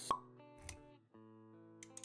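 Animated-intro sound effects over background music: a sharp pop just after the start and a short low thud a little past half a second in. Then sustained music chords, with a quick run of clicks near the end.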